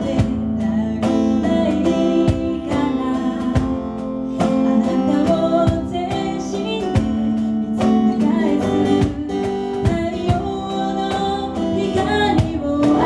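Live acoustic trio playing a pop ballad: a woman singing into a microphone over strummed acoustic guitar, with cajón strikes keeping a steady beat.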